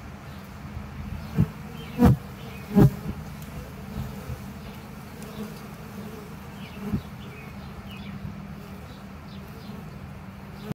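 Honey bees buzzing at a hive entrance: a steady, low hum from many bees, with a few brief louder buzzes as single bees pass close, the strongest about two and three seconds in.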